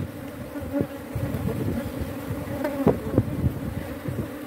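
Honeybees buzzing steadily from an open hive, a frame crowded with bees held close to the microphone. Two brief louder sounds come close together about three seconds in.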